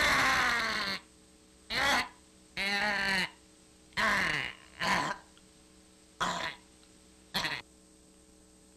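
A woman retching and gagging in about seven short vocal heaves, the first and longest lasting about a second, the rest shorter and spaced about a second apart. A faint steady hum runs beneath.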